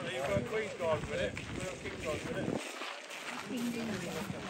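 Indistinct conversation, several people talking and laughing at once, with wind rumbling on the microphone.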